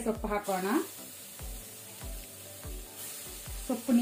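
Potato and onion masala sizzling in hot oil in a steel kadai, a steady hiss that grows stronger about three seconds in.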